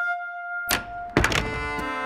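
Cartoon sound effect of double doors being flung open: a swish, then a heavy thunk with a couple of quick knocks about a second in. Music with long held notes starts right after.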